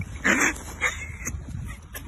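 A fox pinned by a hunting eagle gives short, harsh distress cries: a loud one about a quarter second in and a shorter one near the middle.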